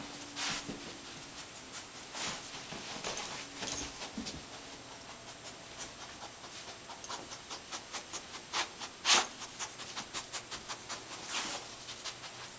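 Bed bug detection dog sniffing along sofa cushions and seams while searching for bed bug scent. Short breaths come singly at first, then in a quick run of about four sniffs a second from about the middle on. The sharpest sniff comes about three-quarters of the way in.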